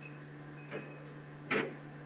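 Background noise of a video call: a steady low hum, with a brief sharp clack about one and a half seconds in.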